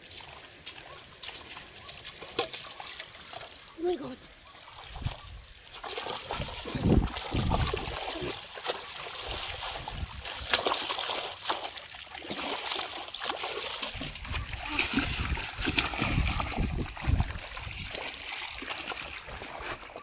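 Shallow water splashing and sloshing as a fish is chased and grabbed by hand. It is light at first, then the splashing goes on almost without a break from about six seconds in.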